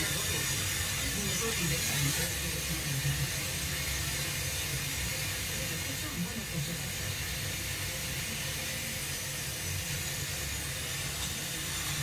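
FM radio receiver giving steady static hiss as a weak long-distance station fades out, with a faint voice barely showing through the noise.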